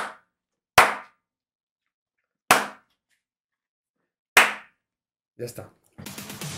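Three single hand claps, each sharp, spaced well apart with silence between them. Near the end a voice sings "mama" as an outro song starts.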